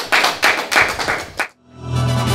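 Audience applauding, cut off abruptly about one and a half seconds in; music with sustained low notes then fades in near the end.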